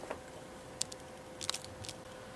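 Quiet room tone with a steady faint hum, broken by a few light clicks and ticks: a double click a little under a second in and a short cluster around one and a half seconds, with one more near the end.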